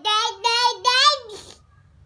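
Toddler's voice: three high-pitched, sing-song babbled syllables in the first second and a half, then a pause.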